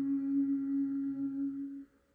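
A woman's voice holding the closing hum of a chanted "Om" on one steady low note, cut off near the end.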